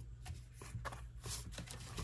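Paper and card being handled: a few short, soft rustles and scuffs as sheets are picked up and slid across a craft mat, over a steady low hum.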